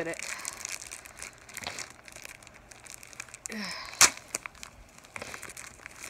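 Plastic packaging of an inflatable swim ring crinkling and tearing as it is opened by hand, with a sharp snap about four seconds in, the loudest moment.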